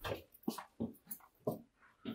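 Footsteps on a tiled hallway floor: about five short steps, roughly two a second, ending as the walker stops at a doorway.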